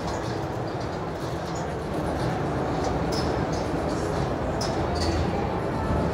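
Steady low rumble of a Jeep Gladiator crawling slowly up steel-grate off-camber ramps, its engine and tyres on the metal grating, with a few faint clicks over the top.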